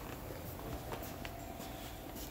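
Low room tone with a few faint footsteps on a wooden floor.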